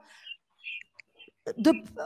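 Speech: a short pause of near silence with a few faint soft sounds, then talking resumes about a second and a half in.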